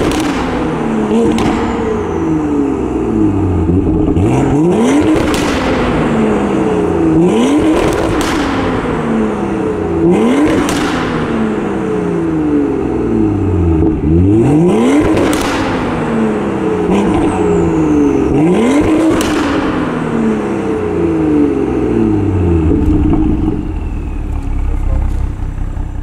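A 2017 BMW M2's 3.0-litre turbocharged inline-six is free-revved through the quad-pipe exhaust about ten times. Each rev rises quickly and falls back more slowly, with sharp exhaust pops near the tops. The sound fades out near the end.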